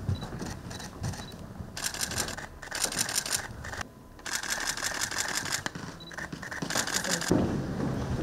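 Camera shutters firing in repeated bursts of rapid clicks, each run lasting up to about a second and a half, with short pauses between.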